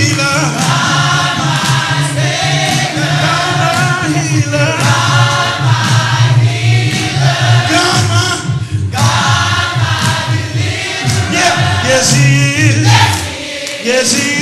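Live gospel praise singing: several voices singing together through microphones, with a steady low musical accompaniment underneath and brief breaks between phrases.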